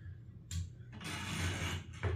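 A bedside wall-lamp switch clicking once about half a second in, followed by about a second of bedding rustling as the child moves on the bed.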